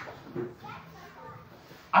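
Faint, indistinct voices in the background of a hall, with no clear words. A man's loud voice cuts back in at the very end.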